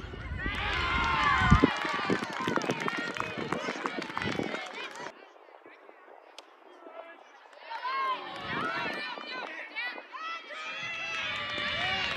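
Spectators and players at a softball game shouting and cheering, many voices at once, with a thump about a second and a half in. The voices die down about five seconds in, then pick up again a couple of seconds later.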